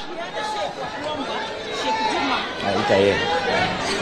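Murmur of many people talking at once in a large hall, with no single voice standing out.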